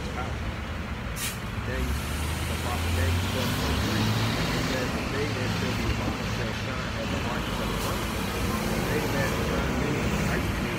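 School bus engine running close by and pulling away, its low drone rising in pitch and loudness about three seconds in. A short hiss of air brakes comes about a second in.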